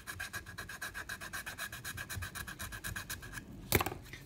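Small round file rasping in a finger hole of a bamboo flute in quick, even strokes, widening the hole to raise a flat B-flat. The strokes stop near the end, followed by a single sharp knock.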